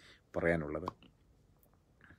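A man's voice, one brief utterance about half a second long, followed by a pause with a couple of faint clicks.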